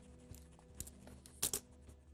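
Sheets of paper rustling as they are handled, with a few short crackles and the loudest crinkle about one and a half seconds in, over a faint steady hum.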